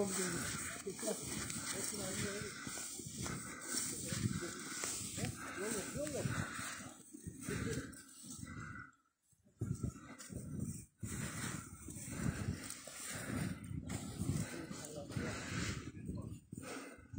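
Heavy, uneven breathing and footsteps crunching through deep snow from someone walking through it.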